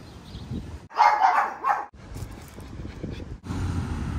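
A run of short clips spliced together, each with its own background noise; the loudest, from about one to two seconds in, is a dog's bark or yelp.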